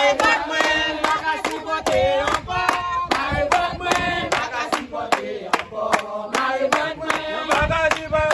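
A group of men and women singing together while clapping their hands in time, about two claps a second.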